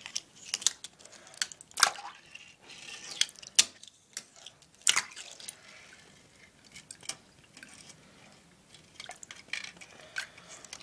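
A Tech Deck fingerboard slapping and splashing in shallow water in a porcelain sink: irregular sharp taps and small splashes, busiest in the first five seconds and sparser after.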